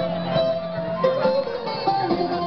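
Live Greek folk dance music with plucked string instruments playing the melody, loud and continuous.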